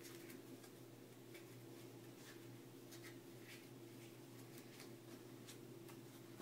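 Faint, scattered clicks of playing cards as a deck is cut and its packets snap together in the hands during a butterfly cut, over a low steady room hum.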